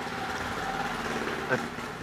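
Steady street background with a vehicle engine idling, and a brief faint sound about one and a half seconds in.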